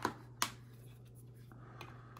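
Two sharp clicks about half a second apart from a hard hobby tool and plastic model parts being handled on a work board, then quiet handling.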